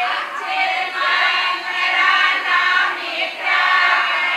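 A group of women singing together, in held sung phrases about a second long.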